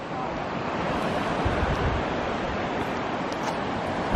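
A steady rush of wind and small waves washing on the shore, with wind buffeting the microphone in a low rumble about halfway through.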